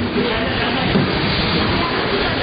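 Busy crowd hubbub: many overlapping voices and movement blending into a steady noisy wash, with no single voice standing out.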